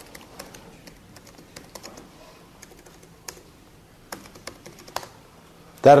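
A few irregular, sharp key clicks, like someone typing on a computer keyboard, over a low background; a man's voice starts just before the end.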